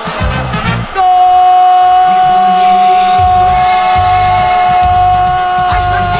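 Brazilian radio commentator's drawn-out goal shout for a headed goal, one long held note starting about a second in, over goal-jingle music with a steady beat.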